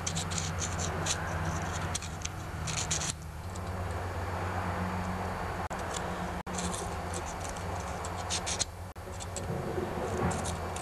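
400 grit emery paper drawn back and forth between the breaker points of a 3.5 hp Briggs & Stratton engine, making short repeated scratching strokes in several bursts. The paper is cleaning the contact faces of points that were not sparking.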